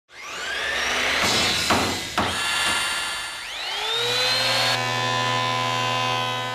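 Intro sound effects for a logo animation: a rising whir, two sharp hits about half a second apart, then another rising whir about three and a half seconds in that settles into a long, steady, many-toned hum.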